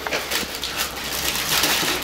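Paper and plastic food wrappers rustling and crinkling in irregular bursts, handled at the table.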